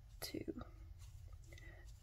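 A woman's voice softly counting "two", with otherwise low room tone.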